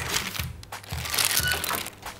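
Baking parchment crinkling and rustling as a tray of unbaked galettes is handled, over soft background music with a light beat.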